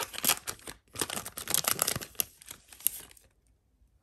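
Foil wrapper of a baseball card pack crinkling and tearing as it is pulled open, a dense run of crackles that stops about three seconds in.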